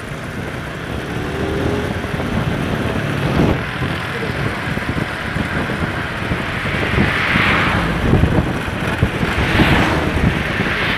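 Motorcycle riding at speed: wind rushing over the microphone on top of engine and road noise. The wind rush swells twice in the second half.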